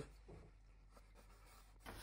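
Faint scratching of pen tips writing on small chalkboards, barely above room tone.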